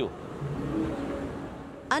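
A motor vehicle engine running amid outdoor street noise, dying down near the end.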